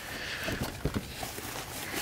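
Faint handling noises as a turbo heat blanket is worked into place around a turbocharger in an engine bay: light rustling with a few soft knocks about half a second to a second in.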